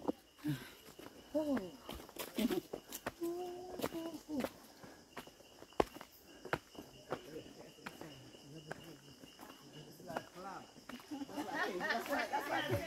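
Footsteps climbing stone steps on a forest trail: irregular soft scuffs and clicks of shoes on stone, with faint voices of other walkers in the background.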